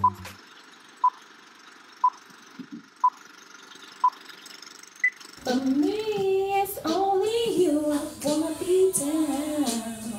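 Film countdown leader beeps: a short beep once a second, five times, then a single higher beep. About five and a half seconds in, a woman's voice starts singing.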